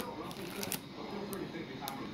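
Plastic-wrapped craft packages rustling and sliding against each other as they are handled, with a few small clicks.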